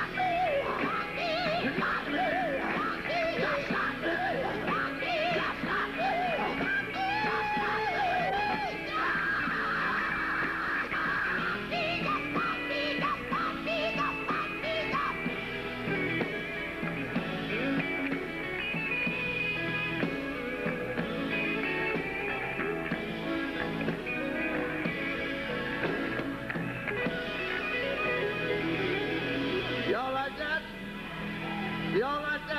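Live gospel quartet music: the band plays on without a break while voices sing and wail over it with no clear words.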